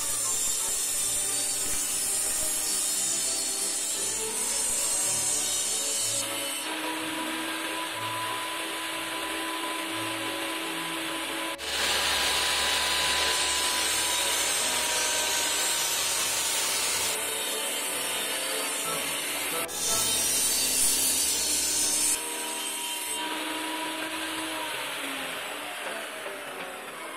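Benchtop table saw running and cutting through pine boards, a steady motor and blade whine under the rasp of the cut, changing abruptly several times.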